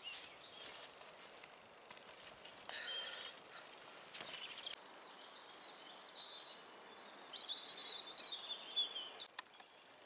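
Rustling and clicking handling noises that stop abruptly about halfway through, followed by small birds singing, a run of high chirping phrases loudest near the end.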